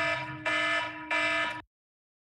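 A phone's alarm going off through a meeting microphone: loud, harsh buzzing pulses, a little under two a second, over a steady tone. It cuts off suddenly about one and a half seconds in.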